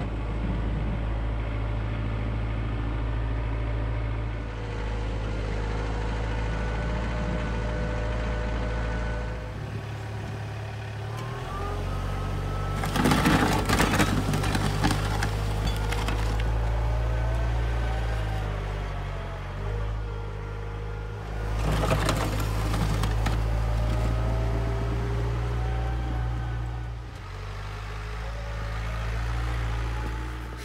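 John Deere 4044R compact tractor's diesel engine running under load as it drags a box blade over snow and gravel, its pitch drifting up and down with throttle and speed. Twice the blade's scraping grows louder for a couple of seconds.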